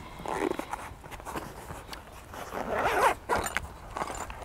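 Velcro-backed fabric pouches of a tool roll being pulled loose: a short rasp near the start and a longer one about three seconds in.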